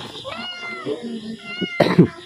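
A faint animal cry, drawn out and rising then falling in pitch, heard twice.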